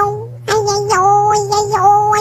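High-pitched, childlike singing voice holding drawn-out notes, pausing briefly near the start, with short clicks between the notes over a steady low hum.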